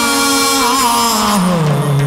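Chầu văn ritual music: one long held sung note that wavers, then slides down to a lower pitch near the end, with no drumming under it.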